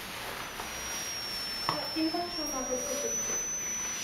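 High-pitched electronic squeal from the 555-timer tone circuit in a knitted tail sculpture, its pitch set by the light falling on its photo sensors. It starts about half a second in, sags slightly in pitch and then rises back.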